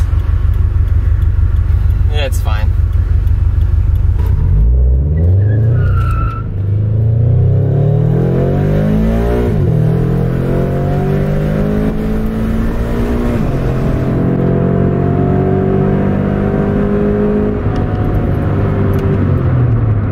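Scion FR-S flat-four engine through unequal-length headers and an Invidia N2 cat-back exhaust, heard from inside the cabin with the windows down. It idles for about four seconds, then pulls away with the engine note climbing, dropping at upshifts about nine and thirteen seconds in. It then holds a steady cruise and eases off near the end.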